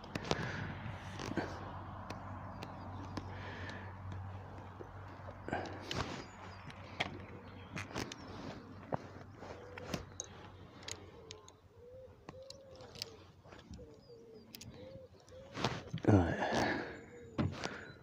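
Scattered light clicks and knocks of fishing tackle and pole sections being handled, with clothing brushing against a clip-on microphone, over a faint low hum in the first few seconds.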